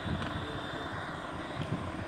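Steady low background noise, a faint rumble and hiss with no distinct event.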